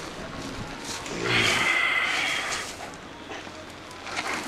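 Dromedary camel giving a rasping groan about a second in, lasting about a second and a half, as it is being led down to kneel.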